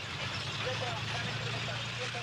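A tank's engine running steadily under a continuous rushing, clattering noise as it moves.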